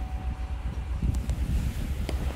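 Chevrolet Tahoe's engine idling just after start-up, a steady low rumble heard from inside the cabin, with a few light clicks about halfway through.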